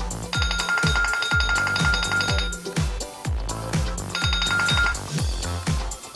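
A phone's countdown-timer alarm ringing in two bursts, a long one near the start and a short one later, signalling that the 10 seconds are up. It rings over background electronic dance music with a steady kick beat of about two beats a second.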